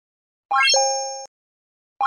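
End-screen button sound effect: a quick rising run of bright notes ending in a ringing two-note chime that fades over less than a second. It sounds once about half a second in and starts again at the very end.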